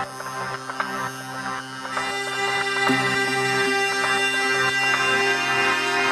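Melodic techno track with layered sustained drone-like synth tones and faint ticking percussion, filling out and growing louder about two seconds in.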